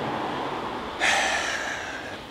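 A man's sharp breath, drawn about halfway through and fading over a second, over a steady background hiss.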